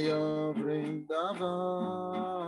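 A man singing a devotional chant (kirtan) in long held notes, accompanied by a strummed nylon-string classical guitar. The singing breaks briefly about a second in, then holds the next note.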